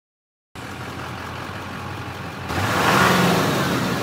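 An engine sound effect that starts about half a second in and runs steadily, then grows louder about two and a half seconds in as a rushing hiss sweeps over it.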